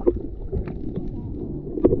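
Muffled underwater sound picked up by a camera just below the surface in shallow sea water: a low rumble of moving water with scattered small clicks and pops.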